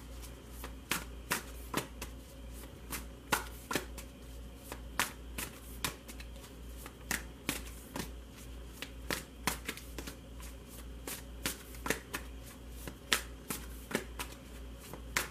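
A deck of large tarot cards being shuffled by hand, overhand, the packets slapping and riffling against each other in sharp, uneven clicks about two to three a second. A steady low hum runs underneath.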